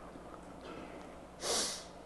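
A man's short, audible breath in close to a microphone about one and a half seconds in, over low room noise.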